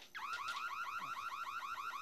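Home burglar alarm siren going off because the keypad code has not been entered: a fast, steady run of rising electronic chirps, about ten a second, starting just after the beginning.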